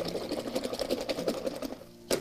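A paintbrush swished in a jar of rinse water, making a rapid, busy rattle of many quick clicks against the container; it stops near the end.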